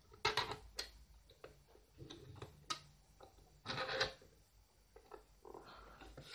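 Steel tip of a small screwdriver scribing a cutting line into an ABS plastic box along the edge of a 3D-printed jig: faint scratches and clicks, with one longer scrape about four seconds in.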